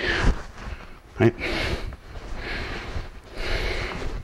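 Soft rustling and shuffling of people moving on a training mat, in three short swells of noise.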